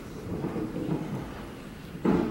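Low, steady rumble of room noise in a hall.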